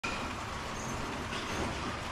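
HO scale model train running on KATO Unitrack sectional track, a steady rolling noise.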